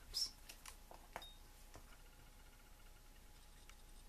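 A few faint clicks and taps in the first two seconds as a small plastic glue bottle and paper pieces are handled on a tabletop.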